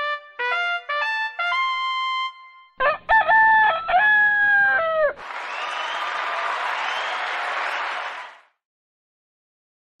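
Segment intro jingle: a run of short stepped musical notes, then a rooster crow about three seconds in, then about three seconds of noisy rushing sound that cuts off, leaving silence for the last second and a half. The jingle is flawed and, in the host's view, needs to be redone.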